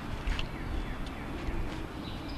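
Low rumble of wind on the microphone outdoors, with a few faint clicks.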